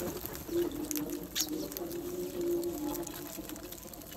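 House crows pecking at grain in a bowl and on concrete: scattered quick taps and seed rattles. Under them runs a low, wavering cooing call.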